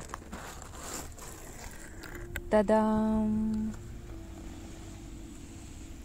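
A cardboard box lid being opened, a soft scraping rustle, followed about two and a half seconds in by a woman's drawn-out vocal sound held at one pitch for just over a second.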